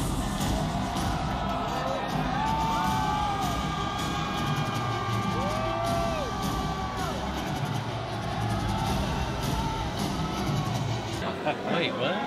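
A crowd cheering and whooping over electronic music, with voices rising and falling in pitch above a steady bass.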